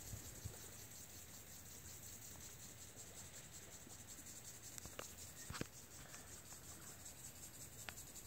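Faint, steady high-pitched chirring of crickets, with a few light clicks about five seconds in and near the end.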